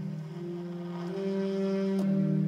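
Alto saxophone playing slow, long held notes, moving to a new note about a second in.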